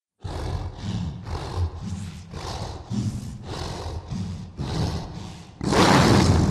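Werewolf breathing sound effect: a run of heavy, growling breaths at about two a second, ending in one louder, longer roaring breath.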